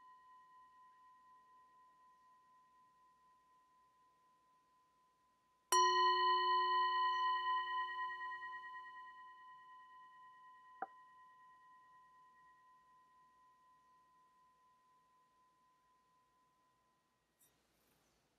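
Hand-held metal singing bowl struck with a wooden striker: the last ring of an earlier strike fades away, then a new strike about six seconds in rings out with a slow wavering pulse and dies away over some ten seconds. A brief small click about eleven seconds in.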